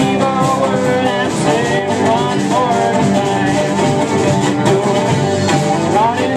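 Live rock-and-roll band playing loudly: electric guitar, bass guitar and drum kit, with a woman singing lead.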